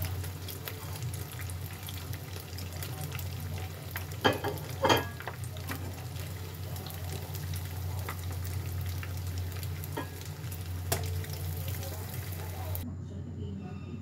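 Battered tofu deep-frying in hot oil in a pan, a steady crackling sizzle, with two louder sharp clicks of metal tongs against the pan about four seconds in as pieces are lifted out. The sizzle cuts off abruptly near the end.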